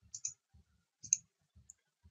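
A few faint computer mouse-button clicks as nodes are selected on screen, the loudest about a second in.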